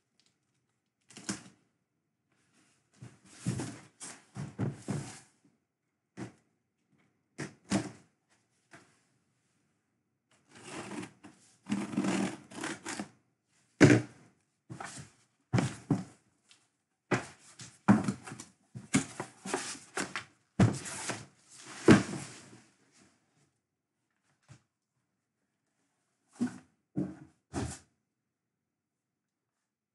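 A cardboard shipping case being handled and opened and the boxes inside taken out: a string of short knocks, scrapes and rustles of cardboard, with a couple of sharp thumps the loudest, and short quiet gaps between them.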